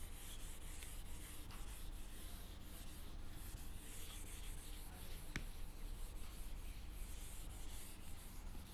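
Handheld eraser rubbing across a whiteboard in repeated wiping strokes, a faint scrubbing that swells and fades with each stroke. One sharp tick a little past halfway.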